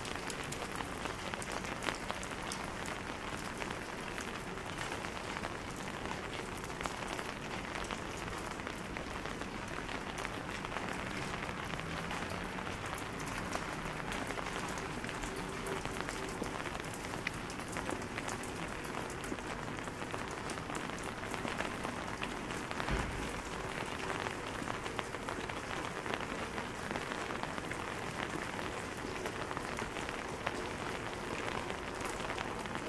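Steady rain falling on wet pavement and stone steps, a dense patter of small drop ticks. One low thump comes about two-thirds of the way through.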